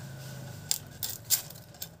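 Dry onion skin crackling and an onion being cut against a curved upright blade: a few sharp clicks, about three in two seconds.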